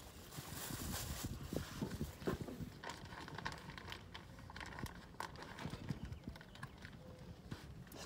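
Faint, scattered light knocks and rustles of things being handled and moved about.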